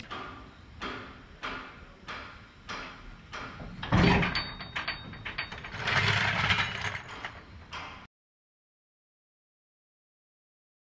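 A long-handled ratchet on a trailer wheel's lug nuts, clicking in an even rhythm about every half second as the nuts are tightened down. Louder, noisier handling sounds follow about four and six seconds in, and the sound cuts off abruptly near the end.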